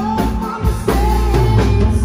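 Live band music: drum kit keeping a steady beat under electric guitar, keyboard and saxophone, with a man singing lead.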